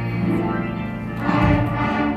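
Children's school band playing, with flutes, clarinets and trumpets holding sustained notes; the band gets louder a little past halfway.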